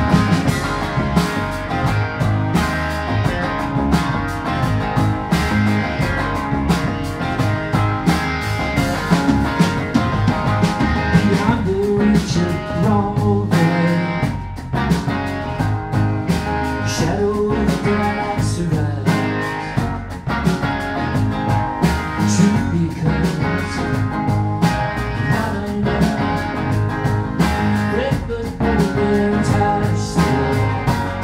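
Live rock band playing: electric guitars, electric bass and a drum kit, with a man singing over the band.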